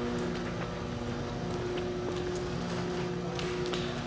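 Steady low mechanical hum with several constant tones and a few faint ticks.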